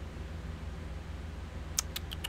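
Low, steady background hum with a single computer mouse click near the end.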